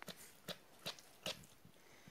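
Pinscher dog chewing on a toy, with a few faint, short clicks of its teeth and mouth about every half second.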